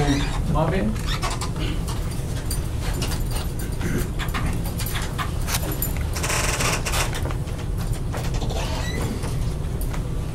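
Meeting-room background with a steady low hum, faint voices and scattered small handling clicks, and a short rustle about six and a half seconds in.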